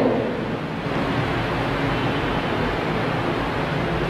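Steady background noise of the room: an even hiss with no distinct events.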